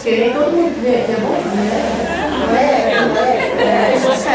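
Speech only: voices talking in a room, overlapping like chatter.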